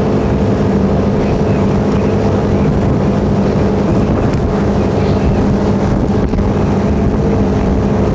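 Motorboat engine running steadily under way, a constant hum with wind on the microphone.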